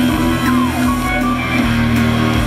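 A live band playing: a sustained bass note under electric guitar and keyboards, with a few short falling sliding tones over the top.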